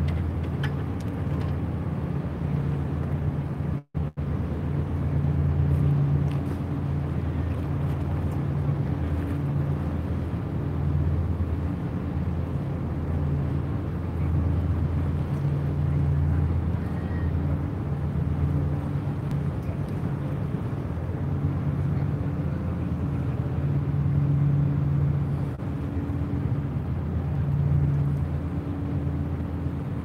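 Large car ferry's engines running with a steady low drone that slowly swells and fades as the ship manoeuvres close by. The sound cuts out completely for an instant just before four seconds in.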